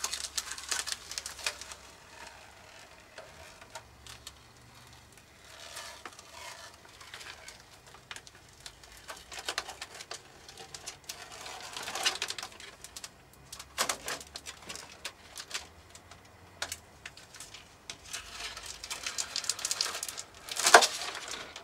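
Paint masking being peeled off a freshly airbrushed model aircraft wing: intermittent rustling and crackling as the mask lifts away, with louder pulls near the middle and end.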